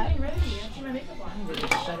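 Light clinking and rattling of small hard items as a hand picks through a clear acrylic makeup organizer on a vanity.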